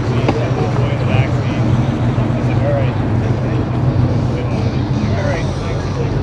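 Steady low drone of a car engine idling, under scattered chatter of people talking in the background.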